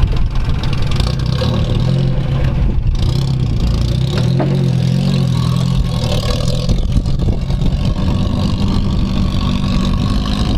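Toyota pickup's engine working as the truck crawls up a rocky off-road trail, the revs swelling about halfway through and then settling.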